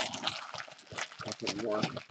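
Foil trading-card pack wrappers crinkling and tearing as packs are opened, dense and crackly in the first second, then sparser. A person's voice comes in briefly in the second half.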